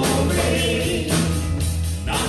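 Live gospel-style praise-and-worship music: several singers backed by a church band with bass guitar and drums, playing with a steady beat.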